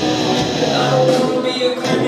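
A rock band playing live: electric guitar and drum kit with a male lead vocal.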